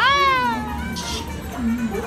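A single high, meow-like wailing cry that rises briefly and then falls away over under a second, over background music.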